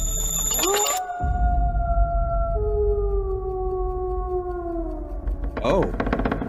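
Movie trailer sound track: two long, slowly falling tones, the second coming in partway through, over a deep rumble.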